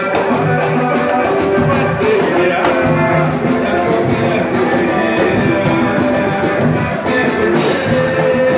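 Live samba band playing: cavaquinho and acoustic guitars strumming over a steady percussion beat.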